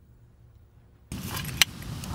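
Near silence for about the first second, then metal clinking as a red adjustable camber arm is handled, its steel plate and bolts knocking, with a few sharp clicks.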